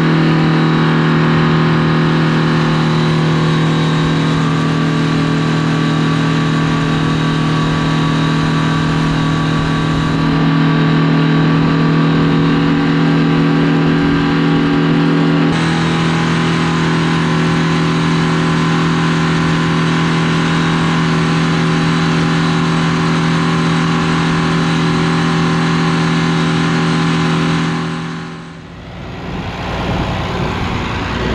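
Oliver 1950 tractor's Detroit Diesel two-stroke engine running steadily under load at a constant working speed. Near the end it fades away and gives way to another diesel tractor engine at idle.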